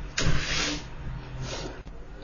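Low background noise of a voice-over recording, with a soft rushing noise that starts just after the beginning and fades over about a second.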